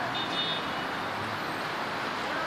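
Steady city road traffic noise: the even rush of cars passing on a nearby road.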